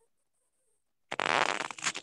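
Near silence, then about a second in a loud harsh burst of noise lasting just under a second.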